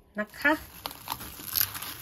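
Plastic cling film crinkling as it is pulled taut and smoothed over a bowl by hand, with small irregular crackles.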